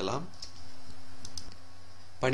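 A few faint, isolated clicks of a computer keyboard over a steady low electrical hum.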